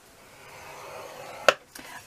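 A scoring stylus drawn along a groove of a scoring board, pressing a score line into cardstock: a soft, steady scraping of about a second and a half, ending in a single sharp click.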